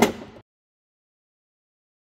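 A man's voice finishing a sentence in the first half second, then dead silence with no sound at all.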